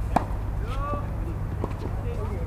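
Tennis ball struck by rackets during a doubles rally: a sharp hit just after the start and another about a second and a half later, over a steady low rumble.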